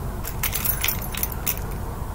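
A quick run of light, high-pitched clicks and jingles, about half a dozen within a second and a half, over a steady low rumble.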